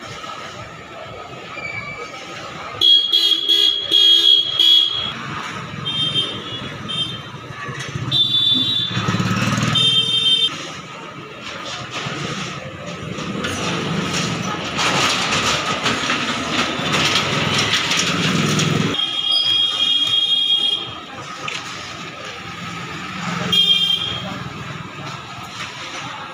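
Street traffic with vehicle horns honking several times: a burst about three seconds in, more around eight to ten seconds, and again around twenty seconds and near the end. Between the honks there is a steady traffic noise that swells for a few seconds midway.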